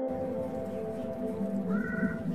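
A steady low rumble with faint music underneath, and a brief high animal-like call shortly before the end.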